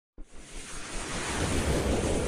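Rising whoosh sound effect of an animated logo intro: a noisy swell with a low rumble underneath, starting a moment in and building steadily louder.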